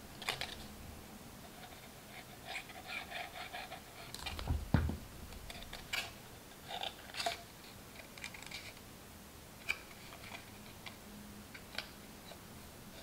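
Faint handling of a red cardstock paper-craft bucket being folded and pressed by hand: light scattered rustles and small clicks, with a soft thump about four and a half seconds in.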